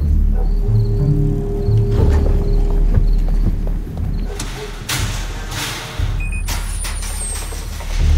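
Music from a TV commercial's soundtrack: low bass notes under a steady held tone, with a couple of brief rushing noises about halfway through.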